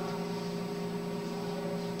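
Steady faint hum with hiss: background room noise, no other events.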